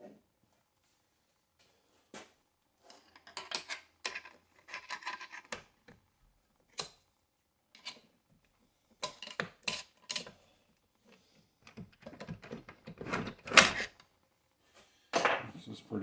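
Screwdriver prying at the drum and clutch pack inside a 700R4 automatic transmission's aluminium case: intermittent metal scrapes, clicks and clunks, with the loudest clunk near the end.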